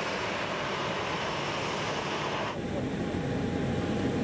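Boeing 737 airliner's jet engines running: a steady roar. About two and a half seconds in it changes to a duller rumble with a faint, thin, steady whine over it.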